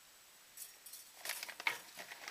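Plastic packaging rustling and crinkling as hands dig into a parcel bag, starting about a second in, with a few sharp clicks.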